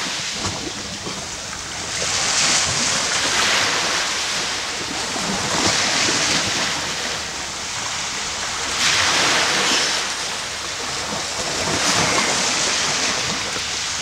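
Small waves breaking and washing up onto a sand beach. A hissing surge of surf comes about every three seconds.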